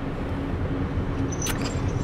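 Car engine idling while the car is stopped, heard from inside the cabin as a steady low rumble, with a short click about one and a half seconds in.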